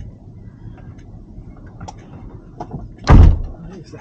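A van's front door slammed shut about three seconds in: one heavy thud, the loudest sound here. Small clicks and rustles come before it as someone climbs into the driver's seat.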